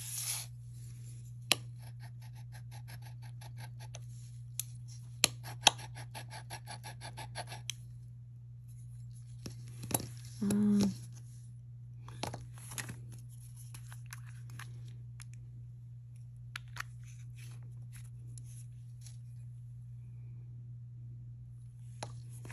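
A metal bangle bracelet rubbed quickly back and forth on a black touchstone, a fast regular run of scratchy strokes lasting several seconds, leaving a streak of metal for an acid test of what the bracelet is made of. A few light taps and clicks follow as the stone is handled.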